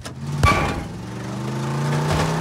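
A sudden loud hit about half a second in, then a car engine running with a steady hum that grows louder.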